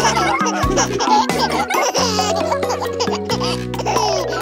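Children's song backing music with a cartoon baby's laughter and giggles over it.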